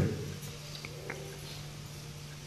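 A pause in a man's speech: room tone with a faint steady low hum and faint hiss, the last word trailing off at the very start.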